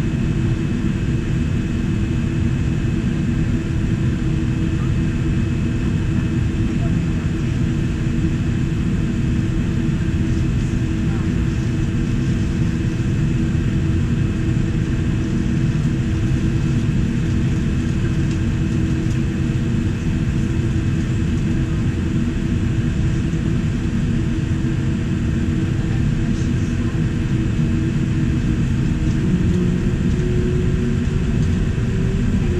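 Steady cabin rumble of a Boeing 787-9 on the ground with its GEnx-1B engines at idle, heard inside the cabin, with a steady low hum and a faint high whine. Near the end a low tone edges slightly upward.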